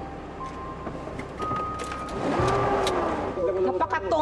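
A car engine running with a steady low rumble as the SUV arrives on the driveway, under a few held background-music tones; a voice comes in near the end.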